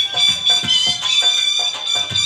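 Shehnai holding a long high reedy note over steady dhol drum strokes, about three a second: live shehnai-and-dhol folk music.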